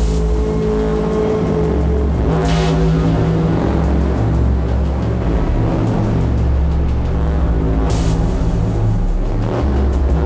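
Improvised electronic drone music from hardware drum machines, the Erica Synths Perkons HD-01 and Soma Pulsar-23: a heavy, sustained low drone with two short hissing noise bursts, about two and a half seconds in and near eight seconds.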